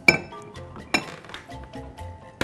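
Two sharp metallic clinks about a second apart as a small steel saucepan is handled, over steady background music.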